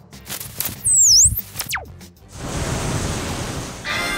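Edited cartoon sound effects: a high whistling glide that dips and rises about a second in, a second falling glide just after, then a steady rushing whoosh for about a second and a half, with bright musical tones starting right at the end.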